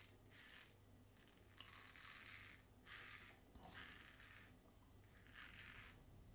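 Charcoal Everyday brass double-edge safety razor, fitted with a Gillette 7 O'Clock Black blade, scraping through lathered stubble in a series of faint, short, raspy strokes, about one a second.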